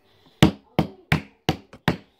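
A small wooden rolling pin knocked against a wooden tabletop five times in quick succession, sharp knocks about three a second starting a little way in.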